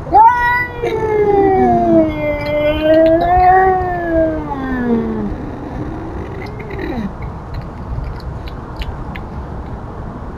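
Domestic cat yowling to warn off an intruding cat: one long drawn-out yowl of about five seconds that wavers up and down in pitch, then a shorter, quieter yowl about seven seconds in.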